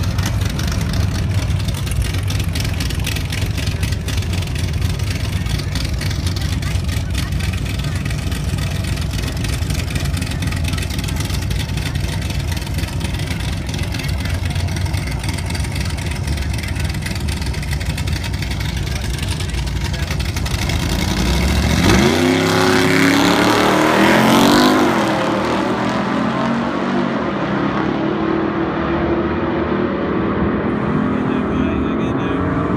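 Two drag-racing engines, an old Jeep's 442-cubic-inch stroker engine and a Jeep Grand Cherokee SRT8's V8, idling loudly at the start line. About 22 seconds in they launch at full throttle, the engine pitch climbing for about three seconds, then the sound falls away and loses its edge as the vehicles run down the track.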